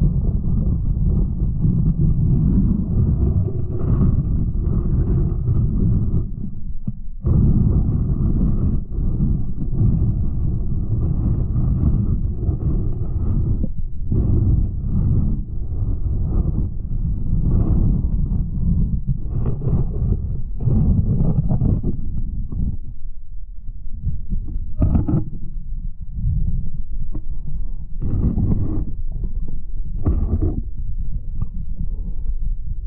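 Muffled underwater rumble and sloshing of water moving around a camera held below the surface, with short breaks about 7 and 14 seconds in.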